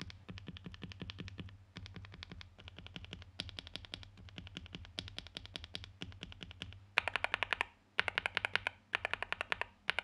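Bare mechanical keyboard switch stems on a NuPhy Gem80 with FR4 plate, NuPhy Mint and Night Breeze switches, pressed rapidly with a fingertip and no keycaps, giving a fast run of sharp clicks. About seven seconds in the clicks get louder and come in short bursts with brief pauses. The presses compare the two switches' sound, with the Mint clearly the quieter.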